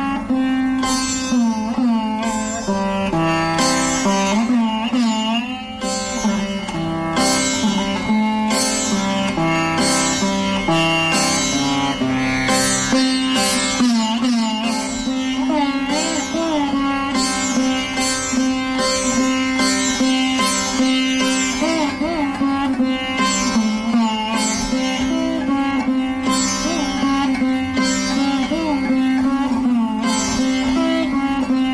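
Solo sitar playing Raga Bibhas: a steady run of plucked notes, many bent in pitch by pulling the string, over a continuous drone.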